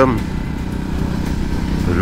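Motorcycle engine running steadily at cruising speed, heard from the rider's seat, a low even hum under the rider's talk.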